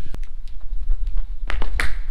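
Quick shoe steps on a paved path, then hand and shoe slaps on a brick wall as a parkour athlete runs in and lands a cat-pass arm jump; the loudest slap comes near the end. A steady low rumble runs underneath.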